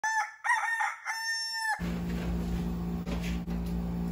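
A rooster crowing one cock-a-doodle-doo in several linked parts, cut off sharply a little under two seconds in. A steady low hum follows.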